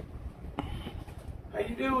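Low wind rumble on the microphone. Near the end a man's voice breaks in with a drawn-out exclamation, "ah, oh", rising and falling in pitch.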